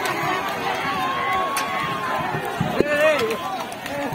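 Several men shouting and yelling over one another in a commotion, with one long drawn-out shout starting about half a second in and another sharp cry near the three-second mark.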